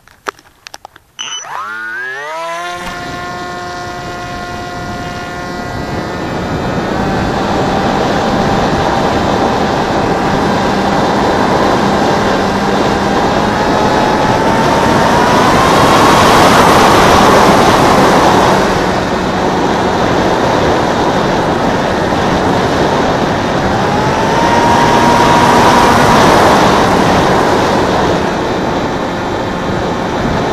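A few clicks, then about a second in a 2200 KV brushless outrunner motor on a coroplast pusher-jet RC plane spins up with a rising whine and runs at high throttle, driving a 7x4 propeller. Heard from a camera mounted on the plane, with air rushing past the microphone. The whine rises in pitch and grows louder twice, around the middle and near the end.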